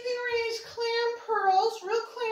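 A woman singing a high melody on a few held notes that slide and dip, with no instrument playing.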